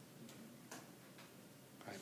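Near silence: room tone with a few faint ticks about half a second apart.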